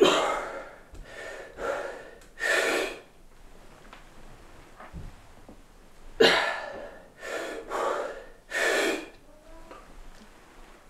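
A man breathing hard and forcefully mid-set under a heavy barbell during back squats: two runs of four sharp breaths, a few seconds apart.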